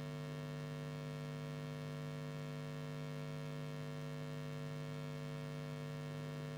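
Steady electrical mains hum with several overtones, unchanging throughout.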